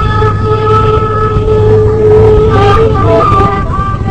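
Gasba, the end-blown reed flute, playing a long held note with slight ornamental wavering in a Rekrouki tune, with a steady low hum underneath.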